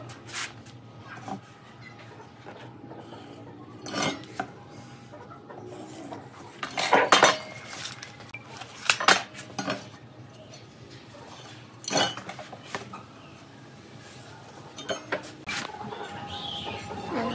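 Metal layout tools handled on a wooden slab: an aluminium speed square and a tape measure set down, slid and picked up, giving scattered sharp clinks and knocks a few seconds apart.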